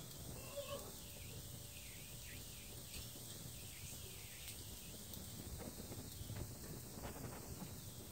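Monsoon rain falling, a steady hiss with a low rumble underneath.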